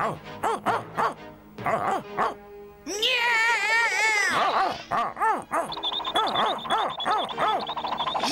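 Cartoon soundtrack: short vocal squawks and music, then a cartoon cat's loud, wavering yowl about three seconds in, its pitch wobbling and dropping away. Music with a high held note carries on after it.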